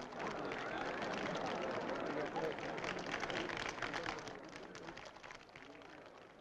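Crowd noise from a cricket ground's stands, an even wash of voices with faint clapping, fading away over the last couple of seconds.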